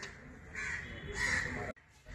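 Two harsh bird calls, crow-like, over a faint background hiss; the sound cuts off abruptly near the end.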